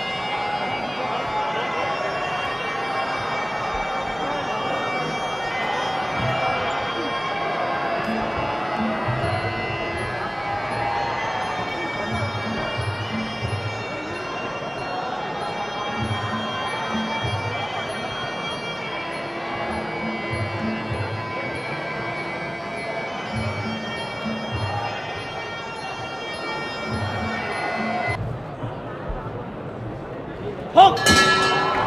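Traditional Muay Thai ring music (sarama): a reedy Thai oboe (pi java) plays a winding, sustained melody over groups of drum strokes and a steady ticking of small ching cymbals. The music stops about two seconds before the end.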